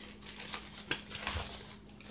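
Faint rustling of a fabric carrying bag and a few light clicks as a tripod is drawn out of it.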